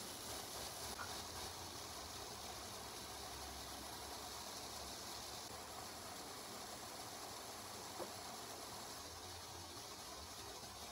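Faint steady hiss of room tone, with a short soft click about eight seconds in.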